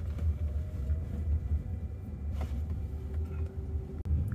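Low, steady road rumble inside the cabin of a driverless Jaguar I-Pace electric car driving on city streets, with a faint steady hum rising above it in the second half.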